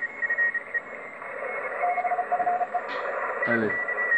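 Morse code (CW) signals received on a Yaesu FT-991 transceiver on the 15-metre band, over steady band hiss. A high-pitched keyed tone is heard at the start and again near the end, and a lower-pitched keyed tone comes in for about a second around the middle.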